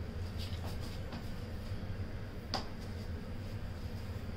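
Quiet room tone with a steady low hum and a few faint clicks, one a little sharper about two and a half seconds in.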